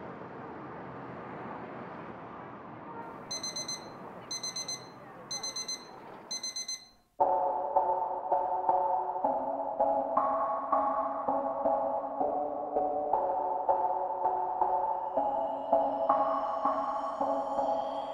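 A phone alarm beeping: four quick bursts of rapid high beeps, about a second apart, over a steady background hiss. About seven seconds in it cuts off suddenly and slow ambient music with held keyboard chords begins.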